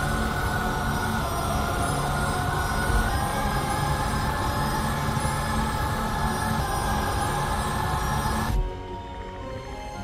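Video slot game's eerie suspense music: a held, droning chord that steps up in pitch about three seconds in and cuts off suddenly near the end. It is the anticipation cue while a reel that could land the bonus is still spinning.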